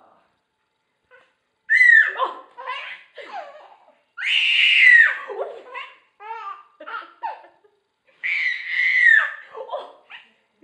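Infant squealing with delight: three long, loud, high-pitched squeals, each about a second long and ending in a falling pitch, broken up by shorter laughing sounds.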